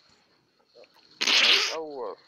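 A person's sudden loud hiss of breath about a second in, lasting about half a second and ending in a brief voiced sound that falls in pitch.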